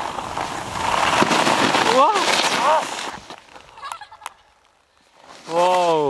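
A snowboard rushing through deep powder snow, ending as the rider goes down into the snow about two seconds in, with two short yelps. After a brief lull, a person lets out a drawn-out cry near the end.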